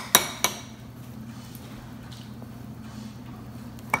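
A metal utensil knocks twice on the rim of a glass bowl within the first half-second, two sharp clinks as foam soap is shaken off into the slime mix. After that there is only a low steady hum.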